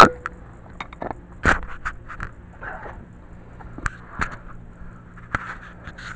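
Handling noise from a dropped video camera: scattered knocks, scrapes and rustles as it is fumbled and picked back up, the sharpest knock about a second and a half in, over a faint steady hum.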